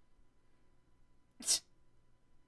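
A woman's single short, breathy vocal burst about a second and a half in, over quiet room tone.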